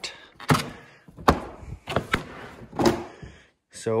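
Plastic side panel of a 2017 Polaris RMK Pro snowmobile being unlatched and pulled off, a series of sharp plastic knocks and clunks spread over a few seconds.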